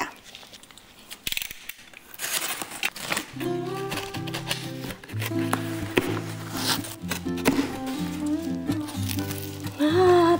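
Packing tape on a cardboard box being slit with a box cutter and the cardboard flaps rustling and scraping. About three seconds in, background music comes in and becomes the loudest sound, with the cardboard rustling continuing under it.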